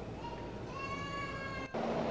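A single drawn-out, high-pitched cry, pitch rising slightly, lasting about a second and a half. It cuts off abruptly near the end, where a louder steady background hum comes in.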